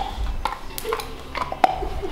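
A dog going after an ice cube on a hard concrete floor: a scattering of irregular sharp clicks and light crunches, about six in two seconds.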